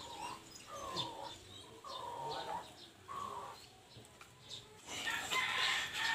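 Faint bird calls: a run of short calls, each falling in pitch, about once a second, with the background noise rising near the end.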